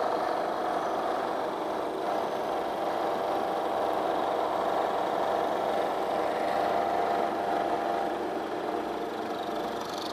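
Milling machine running a helical-flute end mill that cuts a radius on a metal part, which is being swung by hand around a pivot pin on a radius-cutting jig. A steady machining hum with a mid-pitched tone, easing a little near the end.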